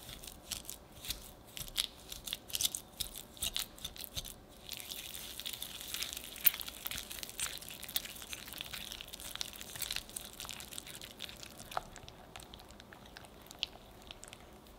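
Wire balloon whisk beating mascarpone cheese and sugar in a glass bowl. First come separate clicks as the wires tap and scrape the glass, then from about five seconds in a fast, continuous rasping as the whisking speeds up, easing off after about ten seconds.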